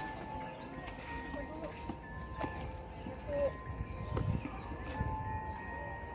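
Outdoor ambience while walking: wind rumbling on the microphone, faint footsteps, and faint sustained ringing tones of distant music that come and go.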